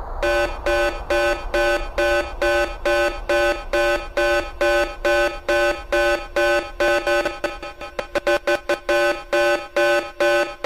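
Electronic dance music section built on an alarm-like beeping synth, about three beeps a second, that breaks into a fast stutter about eight seconds in before returning to the steady beat.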